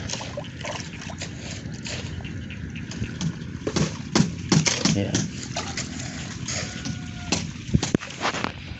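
Steady outdoor background noise with scattered knocks and wet splashing from work in a muddy, water-filled foundation trench.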